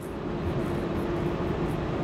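Steady in-cab drone of a Kenworth semi-truck cruising on the highway with a loaded trailer: engine and tyre noise, with a faint steady hum through the middle.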